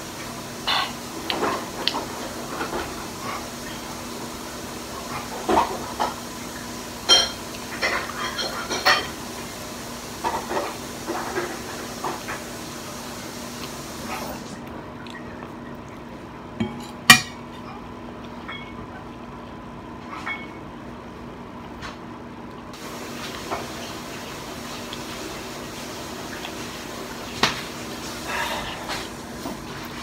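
Metal fork clinking and scraping against a ceramic bowl while eating: scattered light knocks, thickest in the first dozen seconds, with one sharper clink a little past the middle. A faint steady hum lies underneath.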